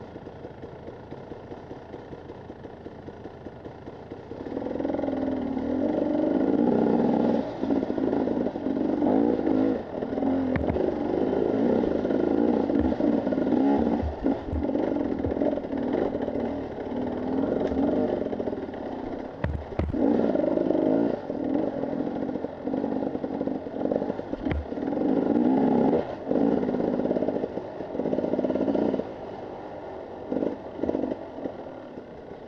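Husqvarna TE 300 two-stroke enduro motorcycle idling for about four seconds, then ridden off with the throttle opened and shut over and over, the engine rising and falling in revs. A few sharp knocks come from the bike over rough ground.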